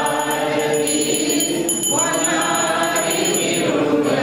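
A group singing a devotional song in long held notes over steady musical accompaniment, with a new phrase starting about halfway through.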